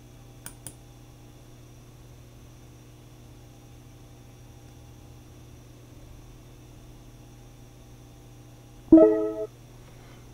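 Two quick computer-mouse clicks near the start, over a low steady hum. About nine seconds in comes a short, loud pitched sound lasting about half a second.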